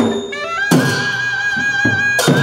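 Muhali, the Newar double-reed shawm, playing a melody that settles into a long, slightly wavering high note. Sharp drum strokes sound at the start and just under a second in.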